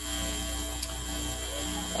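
A steady hiss with a low electrical hum, setting in abruptly and cutting off just as abruptly.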